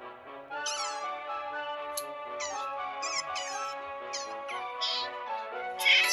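Asian small-clawed otter squeaking in a series of short, high, wavering chirps, about seven of them, the loudest just before the end. Background music with long held notes plays underneath.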